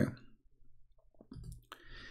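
A man's speech cuts off at the start, followed by a few faint clicks from a computer mouse as the on-screen page is switched, and a soft rustle of noise near the end.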